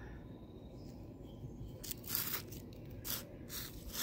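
Faint scratchy rustles of a hand brushing woven weed-barrier fabric and soil while sowing seeds, a few short ones about two seconds in and again after three seconds, over a low steady rumble.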